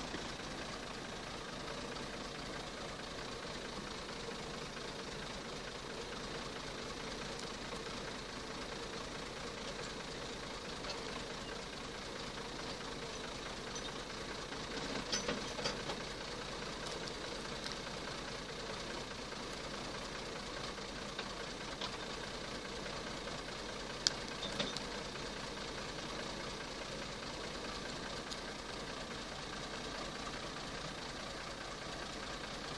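Fiat 480 tractor's three-cylinder diesel engine idling steadily, with a brief swell about halfway through and a single sharp click later on.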